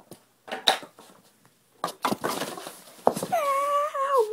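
A few sharp knocks of a golf ball being struck and hitting hard objects, with some scraping between them. Near the end a boy gives a long, high-pitched celebratory yell.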